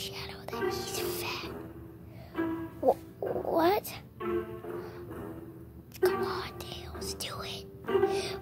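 Whispered voices over soft background music.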